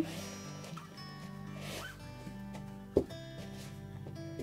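Damp seed-sowing compost scooped by hand into a small plastic plant pot: a gritty rustling and scraping, with a single knock about three seconds in. Soft background music plays throughout.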